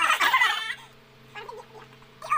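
A person's loud, high-pitched shrieking laugh lasting under a second, followed by a brief fainter laugh sound about a second and a half in.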